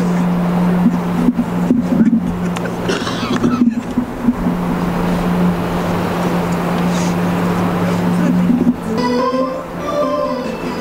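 A steady low mechanical hum runs under open-air stadium noise with distant voices. A brief pitched sound comes near the end.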